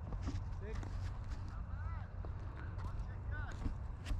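Faint voices of players calling across the field over a steady low rumble, with a few light ticks.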